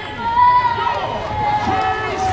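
A woman singing the national anthem holds a long high note, and from about a second in the stadium crowd starts cheering and whooping over it.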